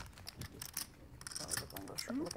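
Clay poker chips clicking and clacking as they are handled and riffled at the table, in a quick, irregular run of small clicks, with faint voices underneath.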